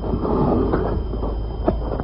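Radio-drama sound effect: a steady rumbling noise with a couple of faint knocks, standing for the elephant getting up and setting off.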